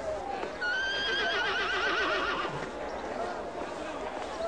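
A horse whinnying once, starting about half a second in: a high held note that breaks into a quavering, falling whinny lasting about two seconds.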